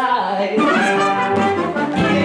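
Brass-led stage-musical music: a sharp accent at the start, then held brass notes over the band.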